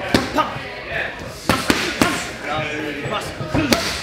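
Boxing gloves punching focus mitts: about six sharp slaps, some in quick pairs, with voices talking in the background.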